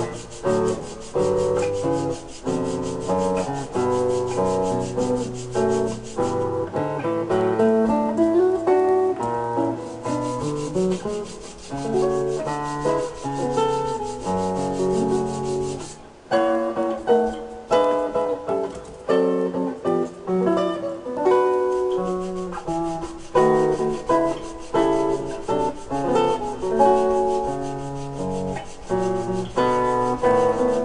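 Hand-sanding a handmade wooden kazoo clamped in a bench vise: repeated rubbing strokes that stop for a few seconds twice. Background music with changing notes plays throughout.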